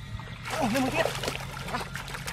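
Hands splashing and sloshing in shallow muddy floodwater, groping for fish by hand. A short wavering voice is heard about half a second in.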